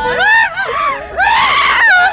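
People yelling and screaming excitedly, high-pitched voices whose pitch swoops up and down, loudest in the second half.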